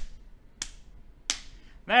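Two sharp, quiet clicks about two-thirds of a second apart, about half a second and a second and a third in, the end of an evenly paced series.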